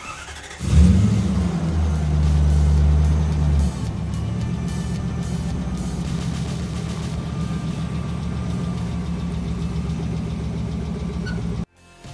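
Lexus LS400 V8 started: a brief crank, then it catches within a second and runs at a raised idle for about three seconds before dropping to a steady idle. The sound cuts off abruptly near the end.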